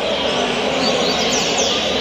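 A steady murmur of a crowded hall, with a few quick, high, falling chirps from caged coleiros (double-collared seedeaters) about a second and a half in.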